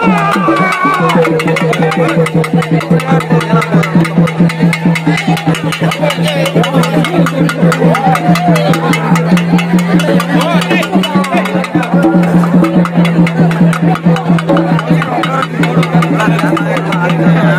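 Drums beating a fast, even rhythm over a held low drone, with a crowd's voices mixed in.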